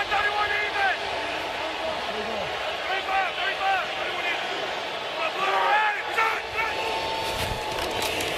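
Steady stadium crowd noise from a packed American football stadium before a snap, with faint shouted voices rising over it now and then.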